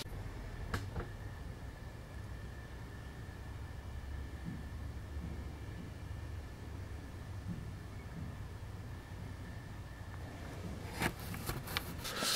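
Quiet room tone: a low steady hum with a faint steady high tone over it, one small click about a second in, and a few light knocks near the end.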